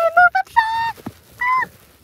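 A sheep bleating close by: two bleats, the first about half a second in, the second shorter one about a second and a half in, falling in pitch at its end.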